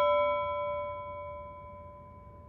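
A single struck bell-like chime, a sound effect on the question title card, ringing with several clear tones and fading steadily away.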